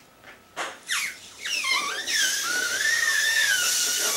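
A clear latex balloon with a pom-pom inside being blown up by mouth: a few short puffs, then a long steady breath of rushing air with a wavering, whistle-like squeal through the balloon's neck.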